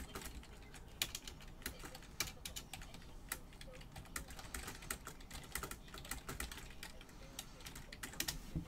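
Keys being typed on a computer keyboard: a run of quick, irregular clicks.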